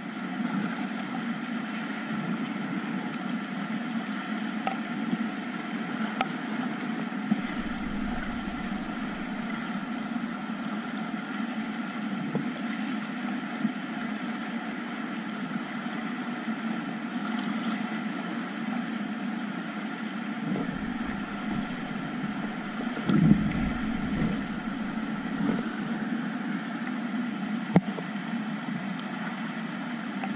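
Steady rush of a whitewater river's rapids, with low bumps of wind or handling on the camera microphone twice and a single sharp knock near the end.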